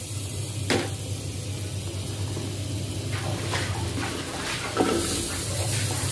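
Butter melting and faintly sizzling in a steel pressure cooker, over a steady low hum. A sharp click comes just under a second in, with a few lighter knocks toward the end.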